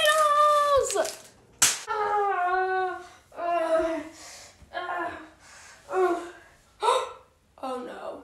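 A boy's voice making a string of drawn-out wordless vocal sounds, each lasting about half a second to a second, with a sharp smack right at the start and another about a second and a half later.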